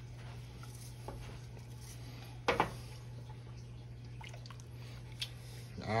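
Quiet kitchen sounds of seasoning being shaken from a small plastic container into a pot and stirred with a wooden spoon: a steady low hum, a few faint taps, and one sharper knock about two and a half seconds in.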